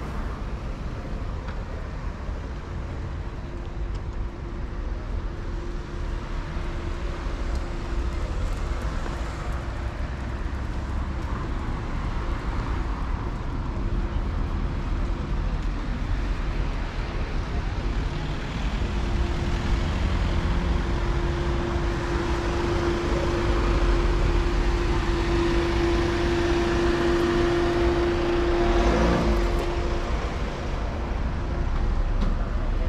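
Town street traffic: cars driving by with a continuous low rumble, and a steady engine hum that gets louder in the second half, with a brief rising-and-falling pass near the end.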